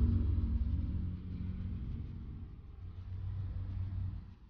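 Steady low rumble of a car heard from inside the cabin, dipping quieter in the middle and coming back near the end.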